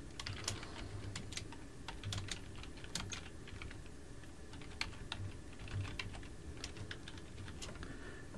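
Typing on a computer keyboard: a run of quick, irregular key clicks, quieter than the voice around it.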